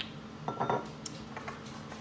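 A bottle being set down on a granite countertop beside a glass shot glass: a sharp click at the start, then a lighter clink with a brief ring about half a second in, and a faint tap later.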